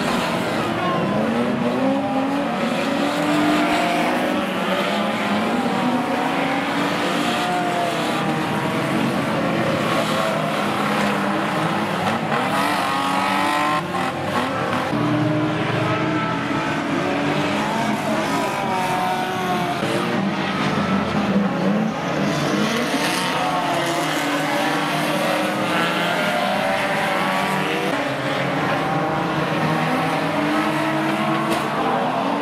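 Several banger racing car engines revving and running together, their pitches rising and falling as the cars accelerate and lift off, over steady tyre and track noise. The sound breaks off briefly about halfway through, then carries on.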